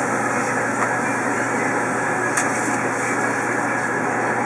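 Steady whoosh and low hum of a kitchen exhaust fan running over a flat-top griddle, with one faint click a little past halfway.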